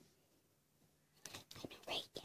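Near silence, then from a little past halfway faint whispering with a few soft clicks, growing slightly louder near the end.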